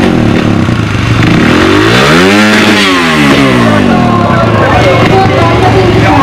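Trials motorcycle engine running at idle, blipped once about two seconds in so its pitch rises and falls back within a second or two, as the rider readies the bike at the foot of an obstacle.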